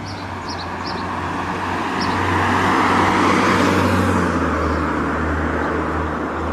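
A car passing close by on the street: its engine and tyre noise swell to a peak about three seconds in and then fade, and the low engine hum drops in pitch as it goes past. Small birds chirp briefly near the start.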